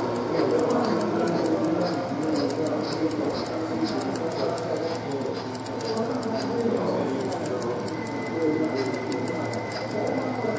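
Indistinct chatter of many voices in an exhibition hall, with a faint rapid ticking underneath of about four or five ticks a second.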